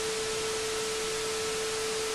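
TV static hiss with a steady, single-pitched test-pattern beep held over it, a glitch-transition sound effect.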